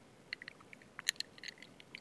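Faint, scattered small clicks and smacks of a person's mouth and lips while drinking or taking a sip, close to the microphone.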